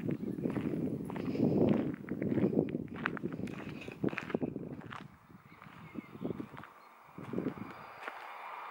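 Footsteps on a gravel path, a run of quick irregular crunches that is louder in the first half and thins out and quietens after about five seconds.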